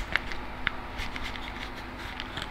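A few faint clicks and light crinkling from a clear plastic tackle packet being handled and opened by hand, over a steady low hum.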